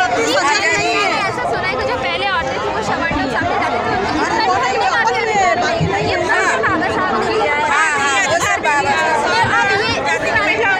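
Speech only: several women talking over one another, with crowd chatter around them.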